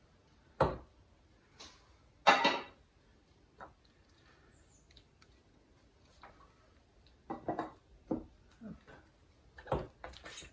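Scattered knocks and clatters from handling a screen-printing setup between prints: the hinged screen frame, the squeegee and the metal pedal enclosures being moved. The loudest is a short rattle about two seconds in, and a few more knocks come near the end.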